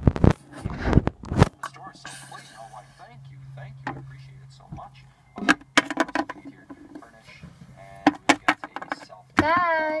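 Sharp knocks and taps, a quick cluster in the first second and a half and a few more later, over a low steady hum. A child's voice starts calling near the end.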